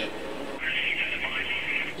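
Race television broadcast audio playing under the reaction: a steady hiss comes in about half a second in and holds.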